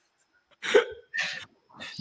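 A man laughing under his breath: two short, breathy chuckles about half a second apart, starting about half a second in.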